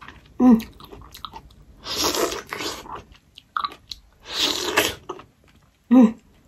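Close-up mouth sounds of biting into and chewing the soft, juicy flesh of a Japanese plum (sumomo), with three longer wet sucking sounds about two seconds apart.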